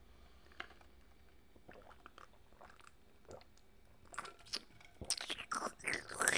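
Faint mouth sounds close to the microphone as a man drinks from a stainless steel tumbler: sips, swallows and lip clicks. They grow louder and more frequent in the last two seconds.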